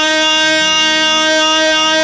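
Middle Eastern wedding music: a violin-toned melody instrument holds one long, steady note, with a pitch bend into it just before.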